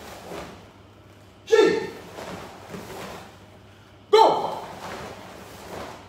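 Two sharp shouts, about two and a half seconds apart, each fading quickly, timed with karate techniques done in unison: the counting or kiai shouts of a karate drill.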